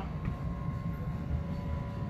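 Steady low rumble of outdoor background noise, with a faint steady hum running under it.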